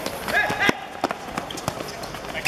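Players running on a hard outdoor court, with sharp knocks of the ball being dribbled and struck. A brief high squeal comes about half a second in.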